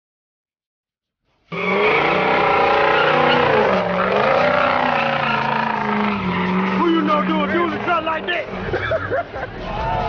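A car doing a burnout: its engine held at high, steady revs with the tyres squealing, cutting in abruptly about a second and a half in. Near the end the revs drop and people shout over it.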